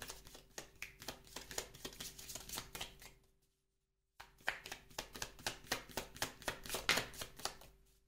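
A deck of oracle cards shuffled by hand, the cards slapping together in quick, rhythmic clicks of about four to five a second, with a short break of complete silence a little over three seconds in.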